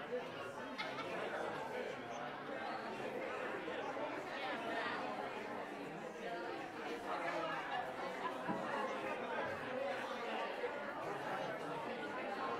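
Indistinct chatter of a congregation: many voices talking at once, none clear, at a steady level.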